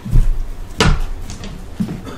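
A dull low thump, then a sharp knock about a second later and a fainter knock near the end: handling or knocking sounds.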